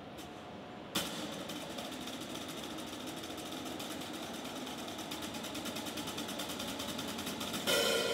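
Yamaha drum kit played solo: a ringing cymbal fades, then about a second in a sudden stroke starts a fast, even snare roll that grows steadily louder for several seconds and ends on a loud accented hit near the end.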